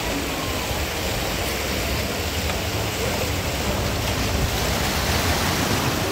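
Sea surf rushing and washing around shoreline rocks, a steady churning wash that builds slightly in the second half.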